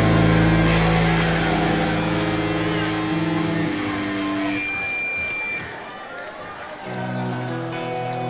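A live rock band's electric guitars hold a final chord that rings out and fades. After a brief high, steady tone about five seconds in and a short lull, electric guitar chords start up again near the end.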